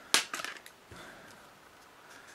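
Snap-on plastic back cover of a UHANS A101 smartphone being pried off: one sharp snap just after the start as the clips let go, then a few lighter clicks.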